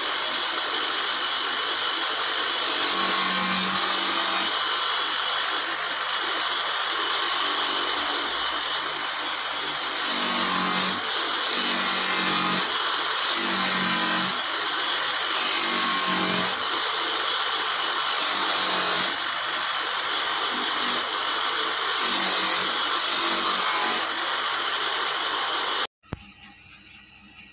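Motor-driven buffing wheel running with a steel knife blade held against it for polishing: a loud, steady hiss.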